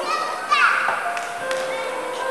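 Yamaha MM8 electronic keyboard playing soft held chords, with a change of chord about one and a half seconds in. A brief high voice, like a child's, is heard about half a second in.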